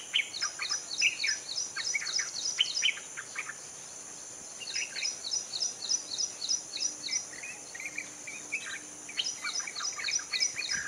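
White-browed bulbul song: abrupt bouts of discordant, babbling notes, each a few seconds long. The bird falls silent for about a second after the first bout and starts a new one near the end. A run of short, evenly spaced high notes repeats alongside.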